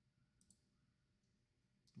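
Near silence: room tone, with a faint computer mouse click about half a second in and another just before the end.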